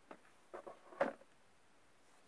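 Light handling noises from small objects being moved by hand: a few faint ticks, then one slightly louder short click about a second in.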